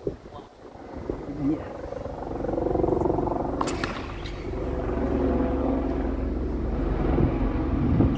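Tennis ball struck by racquets in a rally on a hard court: a few sharp hits, one at the start, one a little past a third of the way in and one at the end. Under them a steady low droning hum builds up after about two seconds.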